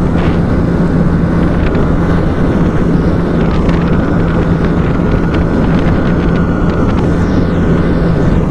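Yamaha R15 V3's single-cylinder engine held at high revs near top speed, heavily overlaid by wind buffeting the onboard microphone. Its note dips briefly a little after three seconds in as the bike shifts from fifth into sixth gear.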